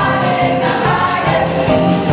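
Gospel choir singing in full voice with a live band of drum kit, electric bass, electric guitar and keyboard, over a steady drum beat.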